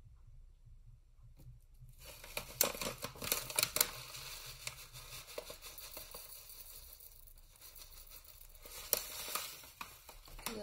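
A plastic zip pouch crinkling as dry shellac flakes are poured out of it, with the flakes ticking and pattering against a glass jar. The rustling starts about two seconds in and comes in busy spurts, with a second flurry near the end.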